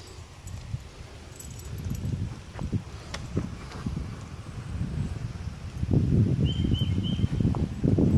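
Rustling, low rumbling handling noise from a handheld camera moving close around a dog on a playground stool, with a few light clicks. Near the end come three short high chirps.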